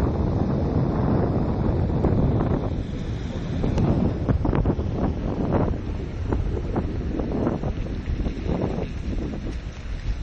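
Wind buffeting the microphone: a dense low rumble of noise that thins after about three seconds into a run of irregular short gusts and crackles.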